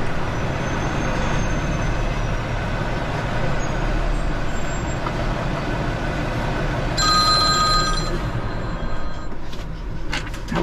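Semi-truck diesel engine running steadily at low speed as the truck creeps forward and stops. About seven seconds in, an electronic ringing tone sounds for about a second.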